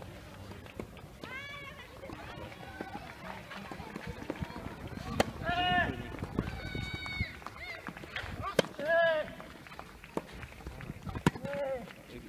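Tennis balls struck by rackets during a clay-court rally, making three sharp pops a few seconds apart. Short, high-pitched shouts from players come between and just after the shots.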